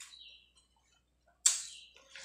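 Wet mouth sounds of someone eating rice and curry by hand: a soft smack at the start, then a louder sharp smack about one and a half seconds in as a handful of food goes into the mouth.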